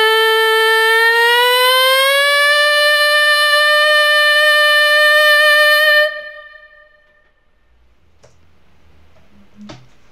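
A solo male voice a cappella holding one high final note of a barbershop lead line, sliding up in pitch about a second in, holding steady, then stopping about six seconds in. Two faint clicks follow near the end, from headphones being put on.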